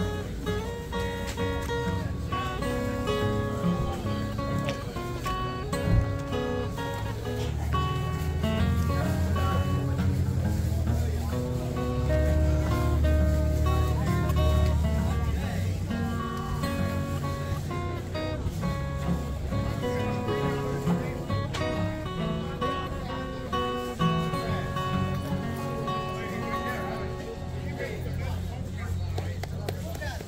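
Acoustic guitar played fingerstyle, a steady run of picked notes and chords. A low rumble sits under the playing for several seconds in the middle.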